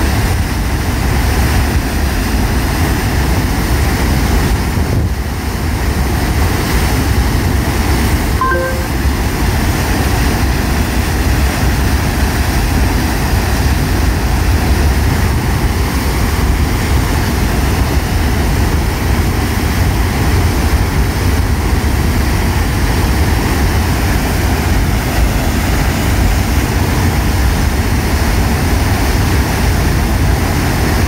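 Steady rush of water discharging from a reservoir outlet and churning into the pool below, heaviest in a deep rumble.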